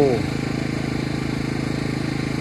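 An engine running steadily: a low, even hum with a fast regular pulse, holding one pitch.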